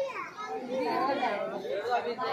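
Background chatter of several voices talking over one another, children's voices among them.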